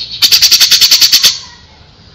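Cucak jenggot (grey-cheeked bulbul) singing a fast burst of about a dozen sharp, high notes, roughly ten a second, lasting about a second and stopping abruptly.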